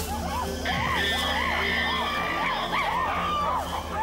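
Chimpanzees calling in a quick series of rising-and-falling hoots and screams, about two or three a second, with higher-pitched calls joining in about a second in, over a steady low music drone.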